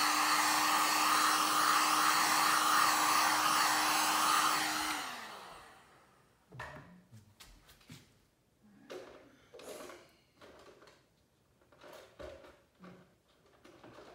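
Heat gun blowing steadily over freshly poured epoxy resin, its fan motor humming at a steady pitch. It is switched off about five seconds in and winds down, followed by a few faint knocks and clicks.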